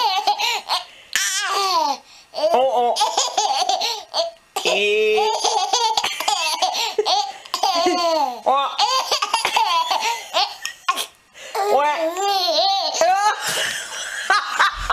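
A baby laughing hard in long bouts of high-pitched giggles, with a few short pauses between bouts.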